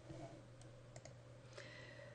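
A few faint computer mouse clicks over a low, steady hum; otherwise near silence.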